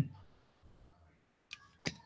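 Two short, sharp clicks about a third of a second apart, late in an otherwise very quiet pause.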